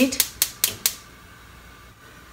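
Gas hob igniter clicking rapidly, about five sharp clicks in the first second, then stopping.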